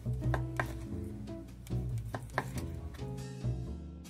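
Background music with a plucked bass line, over a kitchen knife slicing through cooked pork and tapping a wooden cutting board a few times.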